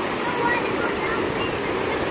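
Steady rush of the choppy Niagara River, water washing against the shore close to the microphone.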